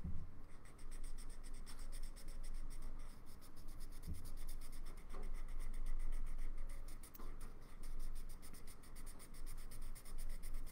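Felt-tip marker colouring in on paper, scratching in rapid back-and-forth strokes. A dull low bump comes about four seconds in.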